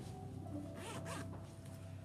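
Two short rasping strokes, close together about a second in, made by something handled out of view, over faint background music with steady held tones.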